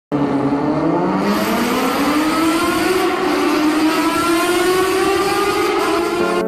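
An engine revving up: one continuous note whose pitch climbs steadily for about six seconds, loud and even throughout.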